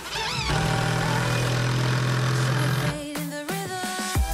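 Cordless drill-driver running steadily for about two and a half seconds as it drives a long wood screw into a two-by-four, over background music.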